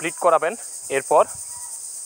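A man speaking in short phrases over a steady, high-pitched hiss that runs throughout.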